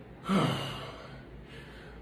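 A man lets out one short sigh with a falling pitch, about a quarter second in.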